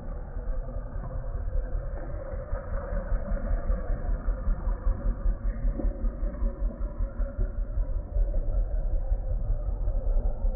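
Road traffic noise: vehicle engines running with a heavy low rumble. It grows louder after the first couple of seconds and pulses unevenly in the second half.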